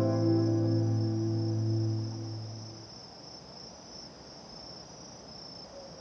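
Crickets chirring steadily in a high, even band. A sustained low music chord fades out over the first half, leaving the crickets alone.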